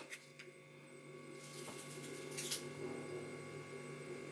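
Quiet room tone with a steady low hum, and two faint soft rustles about one and a half and two and a half seconds in from a small foil-lidded pâté tin being handled and turned over.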